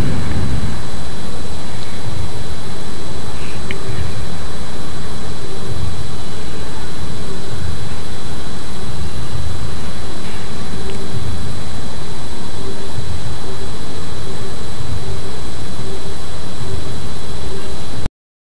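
A loud, steady rushing noise that does not change at all, with a faint high-pitched whine running over it.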